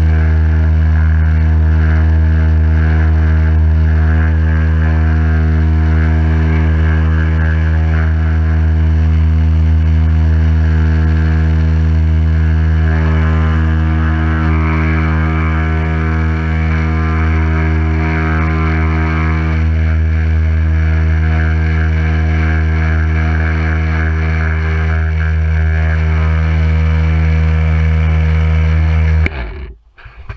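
Pressure washer pump running with a loud, steady hum while the lance sprays water onto the car's bodywork, cutting out suddenly about a second before the end as the trigger is released.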